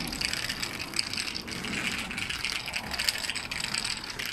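Roller tip of a walking cane rolling along an asphalt path with a continuous fine rattling and clicking. The tip is noisy and due to be changed.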